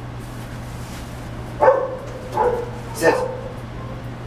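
A dog barking twice, about one and a half seconds in and again about a second later, over a steady low hum.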